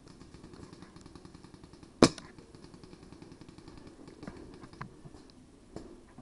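A paintball marker fires a single loud, sharp pop about two seconds in. A few fainter clicks follow later.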